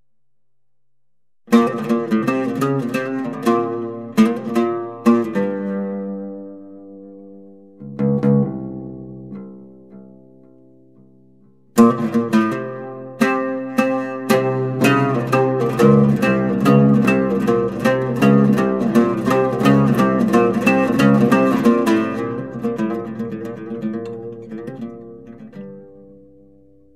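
Music played on plucked string instruments. A phrase of sharply plucked notes starts about a second and a half in and dies away, then a fuller, busier passage begins near the middle and fades out near the end.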